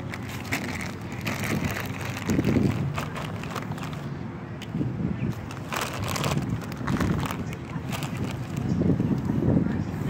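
Footsteps crunching and crackling through dry fallen leaves on grass, a steady run of crisp little crackles as someone walks.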